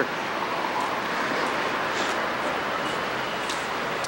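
Steady city street noise: an even hiss of passing traffic with no distinct events.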